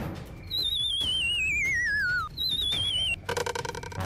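Cartoon sound effect of a warbling whistle sliding down in pitch for nearly two seconds, then a shorter second slide, as a comic dizzy effect for dazed, spiral-eyed characters. A short buzzy tone follows near the end.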